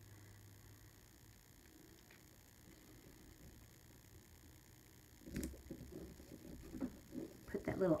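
Hands handling a paper planner and sticker sheet: near silence for about five seconds, then a sharp click and a couple of seconds of light rustling and tapping.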